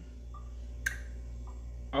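A steady low hum with a single sharp click a little under a second in, and two faint short blips around it.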